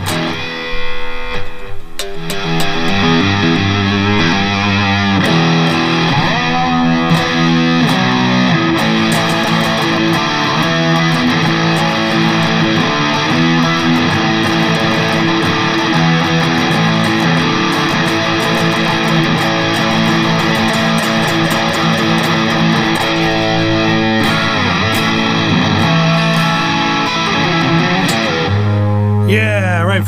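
Charvel So-Cal electric guitar played through an Eleven Rack amp modeller on the bridge pickup, an improvised jam of riffs and lead lines over a drum backing track.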